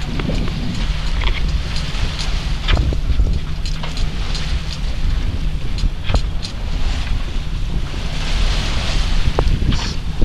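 Wind buffeting the microphone in a low, steady rumble over water rushing and splashing along the hull of a small sailboat under sail, with a few brief sharp splashes or knocks.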